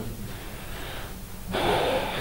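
Low room tone, then about one and a half seconds in a man's audible intake of breath before he speaks again.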